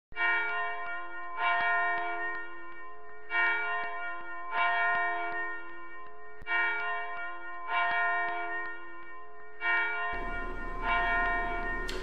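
A church bell struck about eight times, roughly in pairs. Each stroke rings on and fades before the next. A faint steady hiss comes in near the end.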